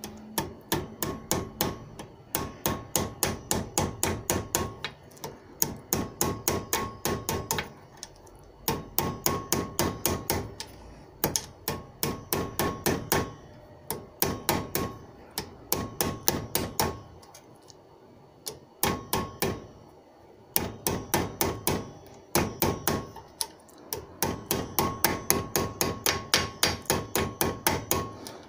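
Hammer blows on steel held in a bench vise, in quick runs of about five strikes a second with short pauses, each blow with a short metallic ring: a steel cup washer being hammered into a dish.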